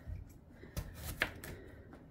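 Kitchen knife cutting through a Korean melon (chamoe): a few faint, short cuts and clicks, the sharpest a little past a second in.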